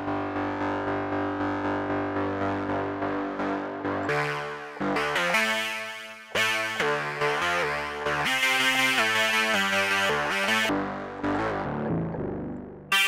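Native Instruments Massive software synth playing its 'Dissonant Guitar' preset: a held chord pulsing about four times a second, then a quick run of short chords stepping through different pitches. The FM is turned up, really mangling the tone.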